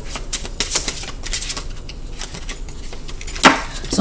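Tarot cards being shuffled and handled: a run of quick, light card flicks and clicks, dense at first and thinning out, with one louder click a little before the end.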